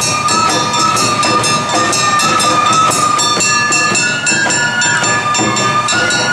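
Awa Odori festival music played live: a bamboo flute holding long, slightly bending high notes over a steady, quick beat of metal hand gong and drums, with shamisen.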